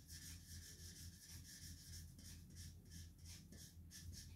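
Black marker rubbing back and forth on paper in quick, faint strokes, about four a second, filling in a solid band. A low steady hum sits underneath.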